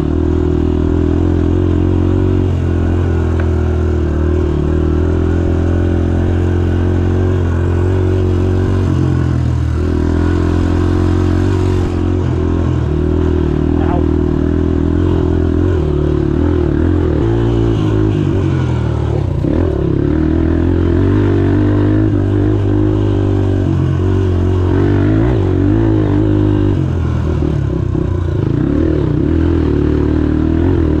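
Honda CRF150F dirt bike's four-stroke single-cylinder engine running under way at low to moderate revs. The engine note dips and rises with the throttle several times.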